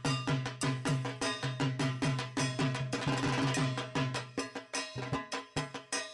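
Percussion music: a fast, even drum beat, about five strikes a second, with ringing metallic clangs over it, thickening into a dense clatter just past the middle.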